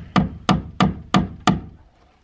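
A hammer striking quickly about three times a second, five blows in all, tacking house wrap onto plywood sheathing.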